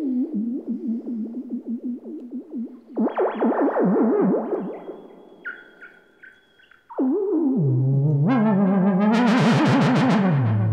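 Moog Werkstatt analog synthesizer played like a theremin, its pitch and filter cutoff steered by a hand moving over range sensors: one buzzy tone that wavers and swoops up and down in pitch. It turns brighter about three seconds in and fades to a faint, high, pulsing tone. At seven seconds it comes back suddenly, drops low in pitch, and near the end the filter opens to a bright, rich tone.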